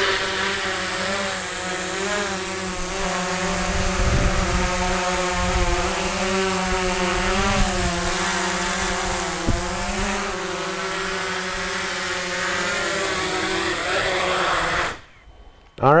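Autel Evo quadcopter's four propellers and motors running through take-off, hover and landing: a steady multi-pitched whine that wavers up and down as the motors adjust. It cuts off suddenly near the end as the motors shut down.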